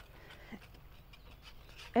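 Whisk stirring thickening milk gravy in a cast iron skillet: faint, repeated scraping strokes.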